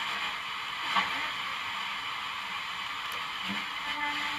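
Steady radio static hiss from a 1970s Blaupunkt Frankfurt car radio being tuned between stations, with brief faint snatches of a station about a second in and again near the end.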